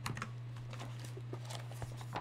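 A few light clicks and taps, most of them clustered near the start, over a steady low hum.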